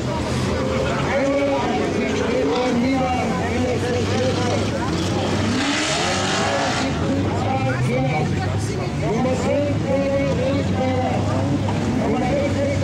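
Engines of several unmodified stock cars of over 1800 cc racing on a dirt track, their pitch rising and falling as they accelerate and lift through the bends. A rushing noise swells briefly about six seconds in.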